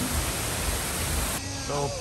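Rushing water of an artificial waterfall, heard as a steady hiss that loses its highest part suddenly about one and a half seconds in.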